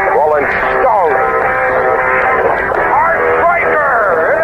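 Car radio broadcast playing: a voice over music, thin and muffled, with everything above the middle range cut away.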